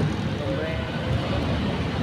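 Busy city street ambience: a steady traffic rumble with faint voices in the background.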